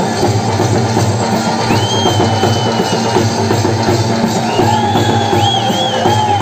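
Loud Banjara folk music for the dancers, carried by a fast, driving drum beat. A high melody line slides up and down about two seconds in and again near the end.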